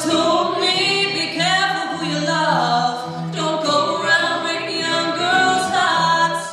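Female voice singing long, gliding held notes into a microphone over a quiet acoustic guitar accompaniment.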